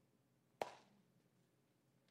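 Near silence with faint room tone, broken about half a second in by a single sharp click that dies away quickly.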